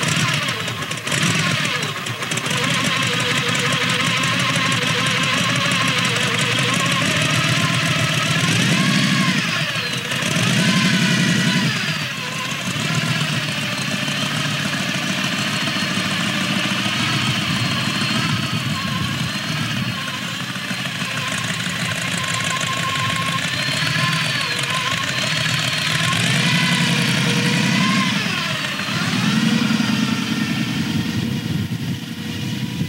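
Supercharged V8 of a T-bucket hot rod idling through open headers. It is revved up and down a few times about a third of the way in, and again near the end as the car moves off.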